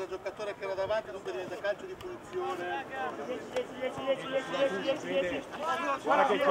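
People talking and calling out, the words not made out.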